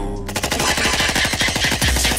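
A rapid burst of machine-gun fire sound effect in a sped-up hip-hop track. It starts about a quarter second in as many sharp shots a second, over a low bass.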